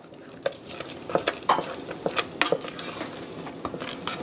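Wooden spoon stirring thick rice pudding in a stainless steel saucepan: irregular scrapes and light knocks of the spoon against the pot.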